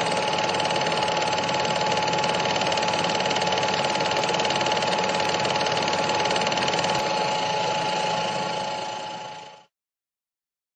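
A steady, rapid mechanical clatter with a constant high whine, running evenly and then fading out about half a second before the end.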